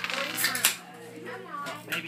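Small plastic dice rolled onto a hard tabletop, clattering and clicking, with the sharpest clatter about half a second in.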